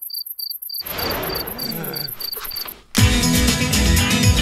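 Insects chirping in a steady pulsing rhythm, about four chirps a second, with a faster, higher pulsing above and soft outdoor ambience beneath. Background music cuts back in about three seconds in.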